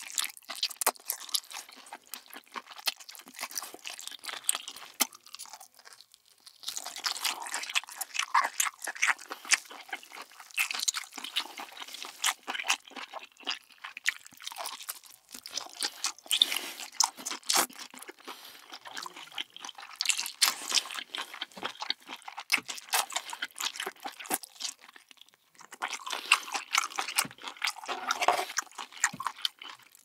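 Close-miked chewing and biting of a whole cooked octopus: dense wet mouth clicks and smacks, with two short lulls, one about six seconds in and one near twenty-five seconds.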